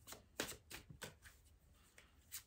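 Tarot cards handled on a table: a few faint, short card clicks and rustles, about four or five over a second.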